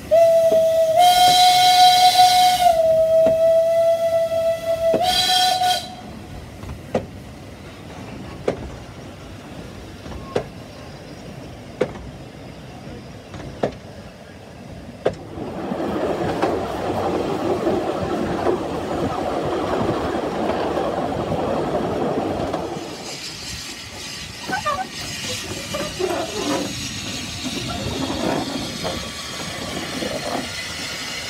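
Narrow-gauge steam locomotive's whistle sounding one long blast of about five seconds, with a short dip in pitch partway and a brief final toot; this is the loudest part. Then the train running, with sharp clicks about every second and a half from the wheels over rail joints, and from about fifteen seconds a steady rumble of the moving carriages.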